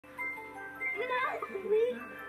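A high voice calling "Molly?" over background music with held, steady notes.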